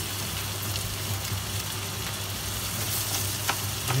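Rice, chicken, onions and peppers sizzling steadily in oil in a paella pan as the rice fries off, over a steady low hum, with a few faint clicks.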